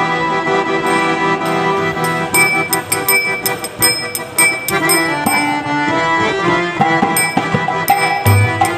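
Harmonium playing a melody over a held low note. From about two seconds in, quick sharp percussive strikes join in.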